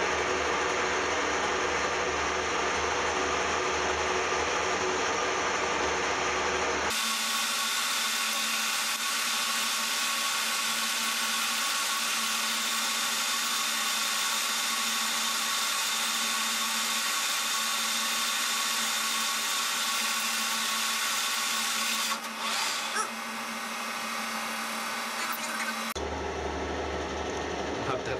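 Metal lathe running while a two-wheel knurling tool is pressed into the turning metal bar, a steady mechanical whir. About seven seconds in the sound changes abruptly, losing its low hum and turning brighter and hissier, with a few short clicks later on before the first sound returns near the end.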